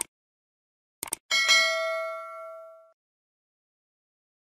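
Subscribe-button animation sound effects: a click, then two quick clicks about a second in, followed by a bright notification-bell ding that rings out and fades over about a second and a half.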